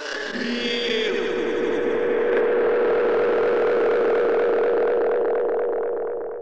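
Heavily distorted, effects-laden electronic sustained tone, the closing sound of an audio remix. It holds one steady pitch inside a dense noisy texture, swelling in at the start and beginning to fade near the end.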